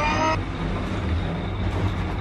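Steady low rumble of an elevator car in motion. A short rising tone ends within the first half-second.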